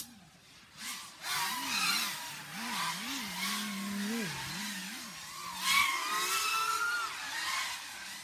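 FPV racing quadcopter in flight, its motors and propellers whining and swooping up and down in pitch as the throttle changes. It begins about a second in.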